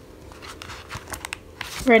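Sheets of printer paper rustling and crinkling as a stack of printed pages is handled and flipped through, in a run of short, irregular crackles.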